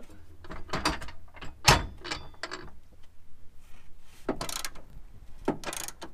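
Ratchet wrench clicking in short bursts as the trailer hitch's mounting bolts are tightened, with one sharper metal knock about two seconds in.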